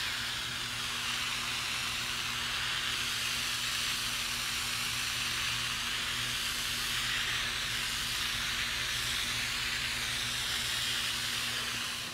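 Garden hose spray nozzle hissing steadily as it sprays a fine mist of water, cutting off at the very end.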